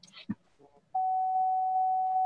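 A steady, single-pitched electronic tone on the video-call audio. It starts abruptly about a second in, holds level, and cuts off sharply with a click.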